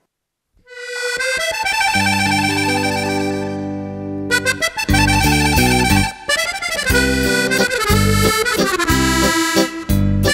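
A solo piano accordion starts playing about half a second in, opening with a held chord that builds up note by note. From about four seconds in, a rhythmic left-hand bass-and-chord accompaniment runs under the melody.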